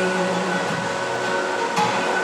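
Live worship music from a church band, with held notes sounding steadily over an even wash of sound.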